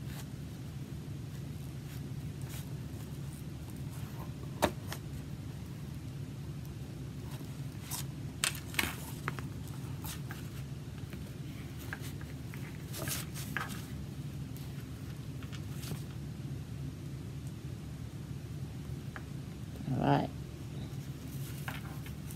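String and wooden craft sticks being handled while a knot is tied: scattered light clicks and rustles over a steady low room hum. A brief murmured voice comes near the end.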